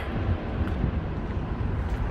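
Low, uneven rumble of wind buffeting the microphone.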